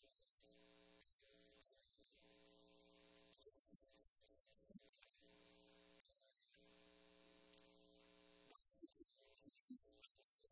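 Near silence with a faint, steady electrical mains hum. The hum drops out briefly about six seconds in and again near the end, where a few faint, short sounds come through.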